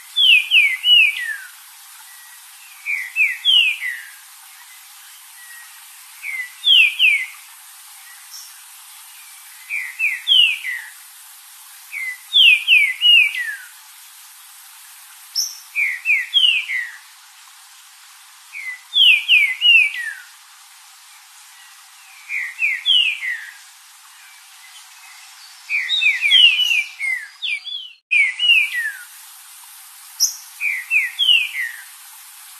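Green-winged saltator (trinca-ferro) singing its short whistled phrase over and over, about once every three seconds. Each phrase is a few quick notes that slide downward, and near the end the phrases come closer together.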